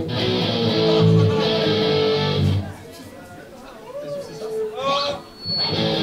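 Electric guitars played live through amplifiers, struck chords ringing for about two and a half seconds. Then a quieter stretch with a voice, and loud chords again near the end as a rock song starts.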